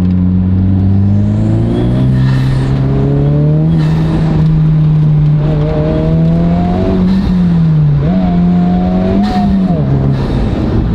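Honda Civic Type R FL5's 2.0-litre turbocharged four-cylinder heard from inside the cabin, pulling hard in second gear with its pitch climbing. The pitch dips about eight seconds in and drops again at the shift into third near the end. It breathes through a newly fitted PRL Motorsports aftermarket intake, which makes the boost and induction noise louder.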